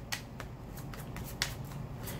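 A tarot deck being shuffled by hand: soft card rustling with several short, sharp clicks of the cards.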